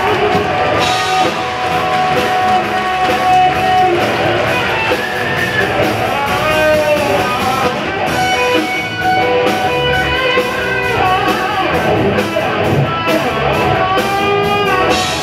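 Live rock band playing an instrumental break: electric guitar lead lines with bent notes over drums and bass.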